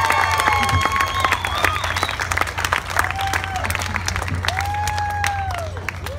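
Audience applauding and cheering: scattered hand claps throughout, with a few long cheers from single voices in the second half.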